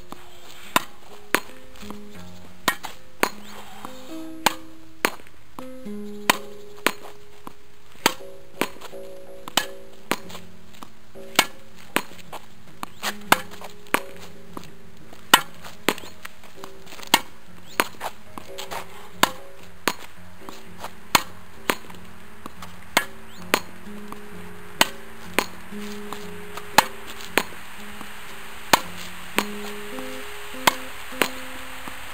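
Tennis ball being rallied against a concrete practice wall: a steady run of sharp pops from racket strikes, wall rebounds and bounces, about one to two a second at uneven spacing. Quiet background music with held notes runs underneath.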